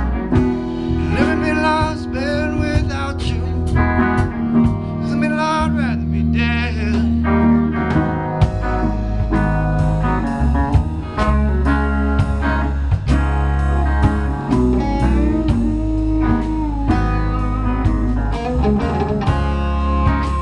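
Live rock band playing an instrumental passage: an electric guitar plays a lead line with bent notes over a drum kit and bass guitar.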